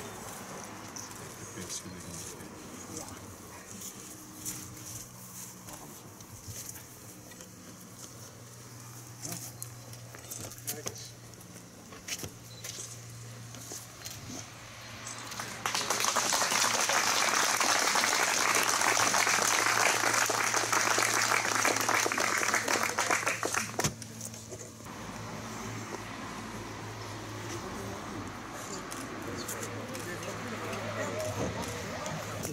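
Applause from a gathered crowd, starting suddenly about halfway through and lasting about eight seconds before stopping. Quieter murmuring comes before it.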